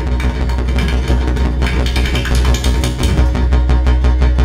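Electronic music from a Eurorack modular synthesizer patch: a deep, steady bass tone under a fast, even clicking pulse and higher held tones.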